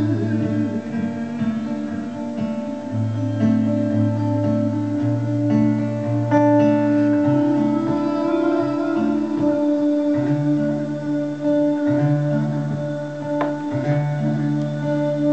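Solo steel-string acoustic guitar played live, chords ringing on with the bass note changing every second or two.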